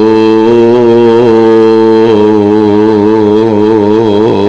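A man's voice holding one long, sustained note in melodic Quran recitation, the pitch wavering slightly, amplified through microphones.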